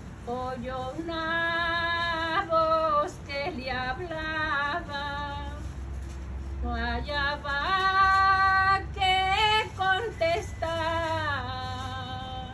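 A woman singing solo in a devotional style, one voice holding long notes with slides in pitch between them, phrase after phrase with short breaths in between.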